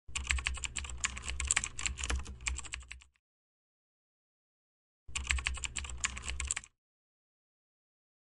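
Rapid typing on keys in two bursts: about three seconds of fast clicking, a two-second gap, then a shorter burst of about a second and a half, with a low hum under the clicks.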